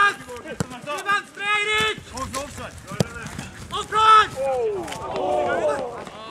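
Footballers shouting short calls to each other during play, loudest at the start and about four seconds in. A single sharp thud of the ball being kicked comes about halfway through.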